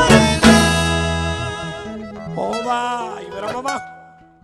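Live vallenato band ending a song: accordion, bass and percussion hit a last accent about half a second in and hold the final chord, which thins out and fades away over the next few seconds, with a voice rising and falling over the tail.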